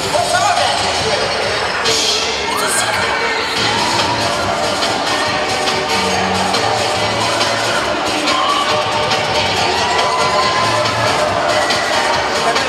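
Cheer routine music playing while the crowd cheers and children shout, with a burst of louder cheering about two seconds in.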